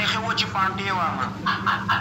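Men laughing in short repeated bursts, over a steady low hum.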